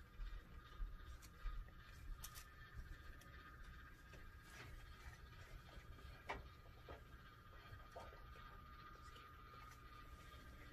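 Near silence: room tone with a faint steady hum and a few soft, faint clicks, about one every second or two.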